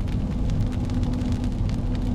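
Inside a car driving on a wet road in rain: a steady low road and engine rumble with a steady hum, and many light ticks of raindrops hitting the windshield.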